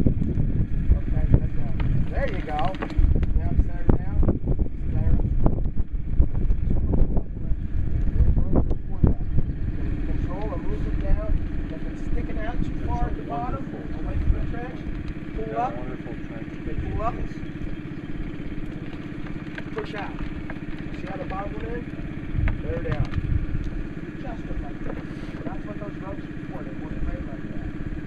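An engine runs steadily in the background with a low hum. Low rumbling and scattered knocks fill the first ten seconds or so, and then die down.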